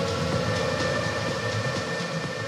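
Electronic dance music mixed by a DJ: a steady four-on-the-floor beat at about 125 beats per minute under long, held synth tones.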